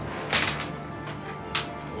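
Dice thrown onto a wargaming table: a sharp clatter about a third of a second in and a second, lighter knock near the end.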